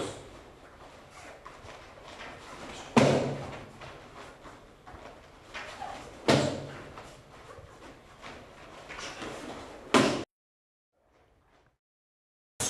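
Taekwondo kicks and punches landing on padded sparring gloves and focus mitts: three sharp slaps about three seconds apart, with softer hits between.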